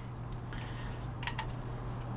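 A couple of light clicks a little past halfway, from a white plastic sink-drain tailpiece and its plastic flange washer being handled, over a steady low hum.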